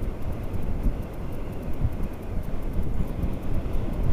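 Motorcycle running at road speed with wind rushing over the microphone: a steady low rumble.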